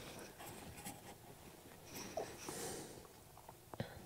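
Faint rustling and scraping of hands pushing a thick insulated power cable into place among the wiring, with a couple of small sharp clicks near the end.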